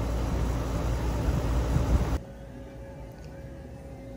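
Brand-new Lennox air-conditioning condenser running: a steady drone of compressor and fan. About two seconds in it cuts off abruptly, leaving quieter room tone with a faint steady hum.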